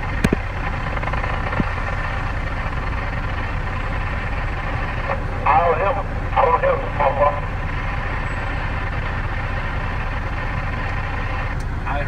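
Steady low rumble of an idling truck engine under the hiss of a Cobra CB radio. There are a couple of sharp clicks near the start, and a short burst of voice comes through the CB a little past the middle.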